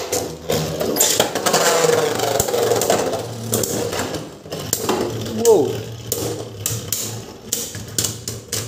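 Beyblade Burst spinning tops whirring and clicking in a plastic stadium as they collide, just after a launch at the start.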